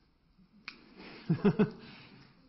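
A single sharp click, then a person's voice in three short, quick pitched bursts about a second later, over faint room noise.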